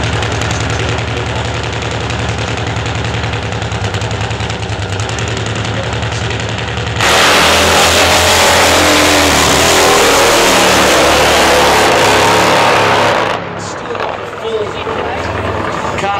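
Drag-racing motorcycle running steadily at the start line. About seven seconds in it launches at full throttle, much louder for about six seconds as it runs down the strip, then drops away.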